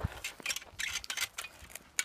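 Scattered light metallic clicks and clinks, several short sharp ones spread through the two seconds, as a speedway bike is handled by hand.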